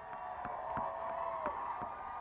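Concert crowd cheering and whooping, with handclaps coming through a few times a second.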